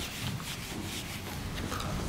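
Whiteboard eraser wiping marker writing off the board in repeated rubbing strokes.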